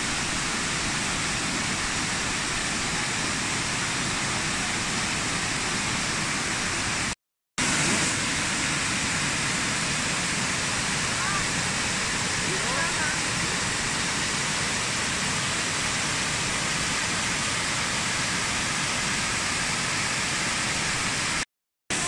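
Elephant Falls, a tiered cascade over dark rock, rushing loudly and steadily. The sound cuts out briefly twice, about seven seconds in and near the end.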